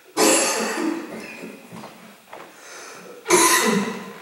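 A man coughing hard into his hand: a loud bout of coughs right at the start, softer coughs after it, and another loud bout near the end. It is a staged coughing fit, acted out as the chronic cough of cystic fibrosis.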